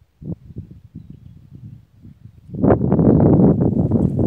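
Wind buffeting a phone's microphone outdoors: faint, irregular rumble at first, turning much louder and denser about two and a half seconds in.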